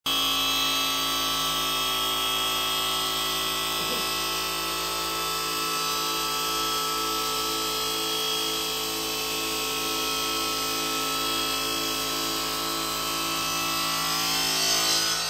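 CNC bridge saw's spindle motor and diamond blade running steadily while cutting a stone countertop slab, a constant whine of several fixed tones with a faint pulsing beat about twice a second.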